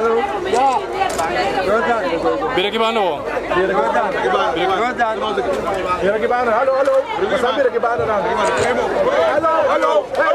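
A crowd of people talking at once: steady, overlapping chatter of many voices.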